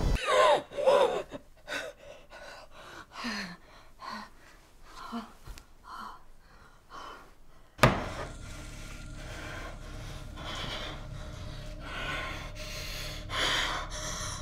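A person gasping and breathing raggedly in short breaths, a few of them voiced like whimpers. About eight seconds in there is a sudden sharp knock, after which the breathing goes on over a steady low hum.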